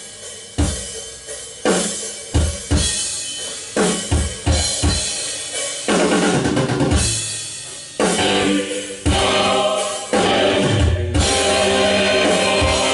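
A recorded drum-kit track of a metal song played back over studio monitors: single heavy accented hits of kick, snare and cymbal, each left ringing, come roughly once a second. About six seconds in it turns into denser, continuous playing that grows fuller near the end.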